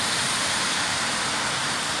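Steady, even hiss of outdoor street noise with no distinct events.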